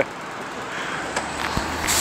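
Irizar i6 coach's diesel engine running at low revs, a steady low hum under traffic noise, with a hiss coming in near the end.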